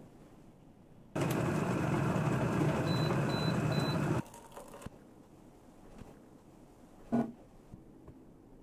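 Electric kettle with a digital temperature display at a rolling boil, a loud rushing rumble that starts suddenly about a second in. Three short high beeps come near its end, signalling that it has reached 100 degrees, then the noise cuts off suddenly about four seconds in. A short knock follows near the end.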